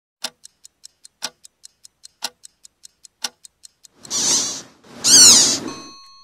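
Clock-ticking sound effect for a show intro: about five ticks a second, with a louder tick every second, for about four seconds. Two short whooshes follow, the second the loudest, and a bell-like ding starts near the end.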